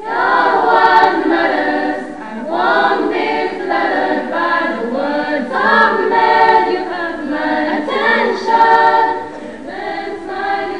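A choir of schoolgirls singing a hymn together, the many voices coming in loudly all at once at the start and moving through short phrases.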